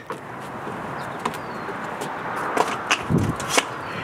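Birds calling over a steady background hiss, with a low call about three seconds in and a few light clicks.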